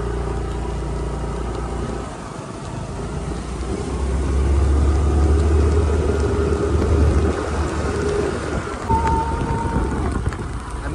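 Motorcycle engine running on the move. It eases off briefly about two seconds in, then pulls louder for several seconds.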